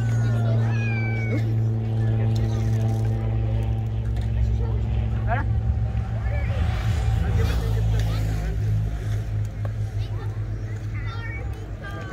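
A steady, pitched low mechanical drone that turns uneven about two-thirds of the way through, under the scattered voices and calls of players and spectators at a ball field.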